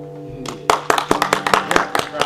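The last acoustic guitar chord rings out and fades. About half a second in, a small audience starts clapping in quick, irregular claps.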